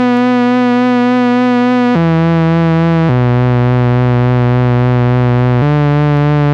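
WS-101 software synthesizer playing its 'violin' preset: long held notes with a light vibrato. The pitch steps down about two and three seconds in, then rises a little near the end.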